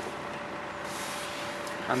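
Steady cabin noise from a BMW 320d's four-cylinder diesel engine idling, heard from inside the car, with a brief soft hiss about a second in.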